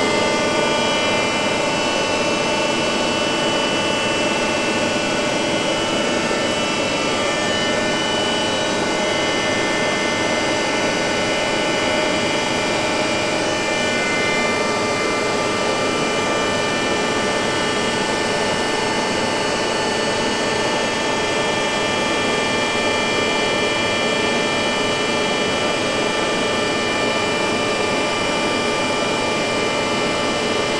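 Vertical milling machine converted to a friction stir welder, running steadily: a constant machine whine made of several held tones.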